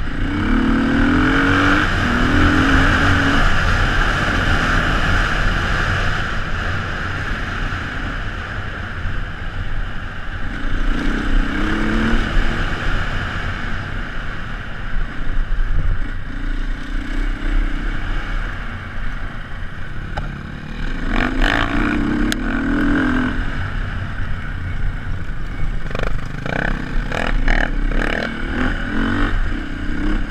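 Onboard sound of a 2006 Beta RR450 four-stroke single-cylinder dirt bike engine riding a rough trail, the revs rising and falling repeatedly. In the second half there is clattering and knocking as the bike goes over bumps.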